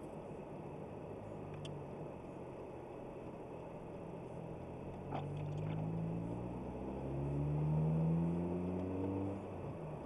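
Car engine heard from inside the cabin, pulling away and accelerating. Its pitch rises about halfway through, drops back as it shifts up a gear, then rises again and is loudest near the end before easing off.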